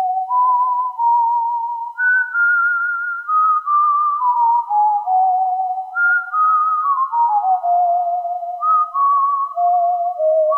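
Casio CZ-101 phase-distortion synthesizer playing a slow melody on a pure, whistle-like patch with a gentle vibrato, notes stepping up and down, with a touch of added reverb letting each note ring into the next.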